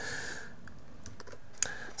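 Faint background hiss with a single sharp computer key click about one and a half seconds in.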